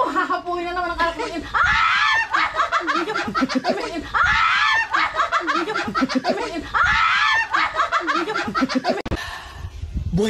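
People laughing hard and shrieking with laughter; nearly the same loud burst of laughter comes three times, about two and a half seconds apart.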